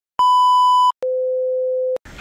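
Electronic test-card tone: a buzzy high beep of under a second, then after a brief gap a pure tone an octave lower, held for about a second.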